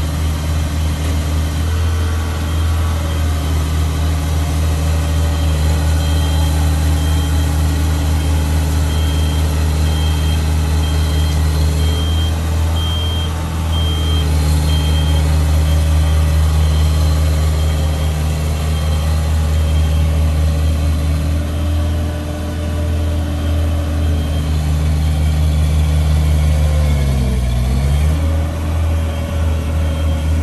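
Diesel engine of a Genie S-40 telescopic boom lift running steadily as the machine drives. A high beeping alarm repeats about once a second for roughly ten seconds midway, and near the end the engine speed dips briefly and picks back up.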